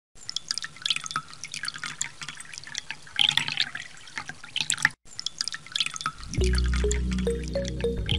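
Water drops falling into water: many irregular drips, with a brief break just before five seconds. A little after six seconds, music comes in with a deep, steady bass and short repeated notes, louder than the drips.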